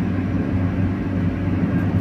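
Steady low drone of engine and tyre noise inside the cab of a Fiat Fiorino van cruising on a highway.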